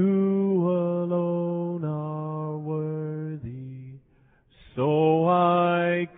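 A man singing solo and unaccompanied in long, held notes: one phrase, a short pause for breath a little past halfway, then the next phrase.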